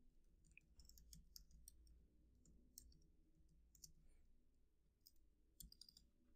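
Near silence with faint, irregular clicks from a computer keyboard being typed on.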